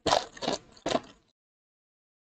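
Foil trading-card pack wrapper crinkling and tearing as it is ripped open by hand: about three short crackly bursts in the first second or so.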